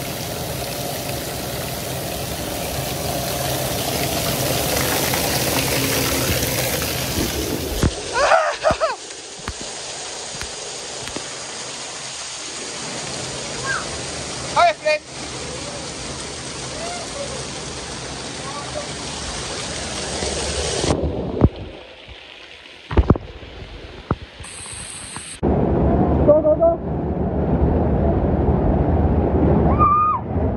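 Running and splashing water of water-park slides and fountains, a steady rush that changes abruptly at several cuts, with voices and short shouts in the background; louder near the end during a slide ride through flowing water.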